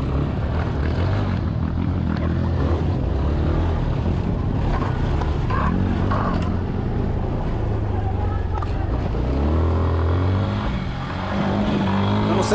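Motorcycle engine running under a rider's throttle, its pitch rising and falling as the bike rides through streets and a narrow alley, recorded on an on-bike camera with a steady rush of wind and road noise.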